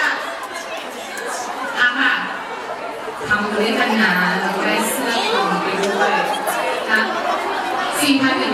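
Speech: several people talking at once, voices overlapping.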